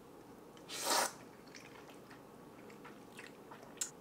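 A person slurping in a mouthful of udon noodles in one short, loud slurp about a second in, then chewing quietly with faint small clicks.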